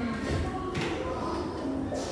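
Background music with faint voices, and one short tap about three-quarters of a second in.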